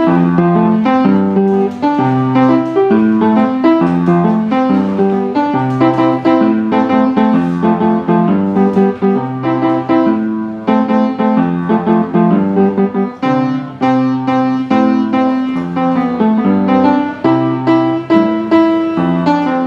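Upright piano played by a child: a piece with a melody over low bass notes, played at an even pace without stopping.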